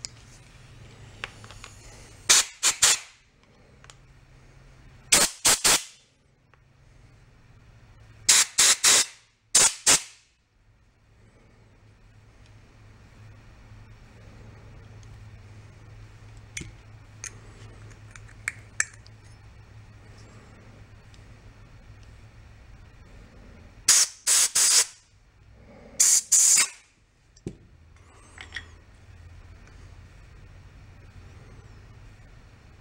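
Compressed-air blow gun blasting short hisses of air through a small-engine carburetor to clear its jet and fuel passages: about four blasts in the first ten seconds, a long lull with a few small clicks, then two more blasts near the end.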